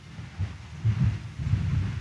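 A congregation getting to its feet: an uneven low rumble of shuffling and movement, swelling about half a second in and again around a second in.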